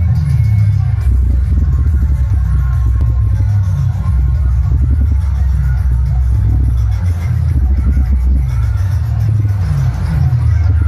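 Loud electronic dance remix blasting from a DJ sound-box rig of bass and mid speaker cabinets, dominated by heavy bass with a repeating run of falling bass notes.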